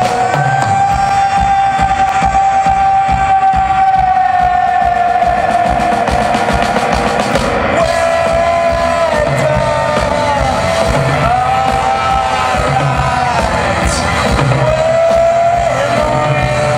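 Live band music from a drum kit and keyboards. A single high note is held for about the first six seconds, then shorter, bending held notes follow over repeated low notes and drum hits.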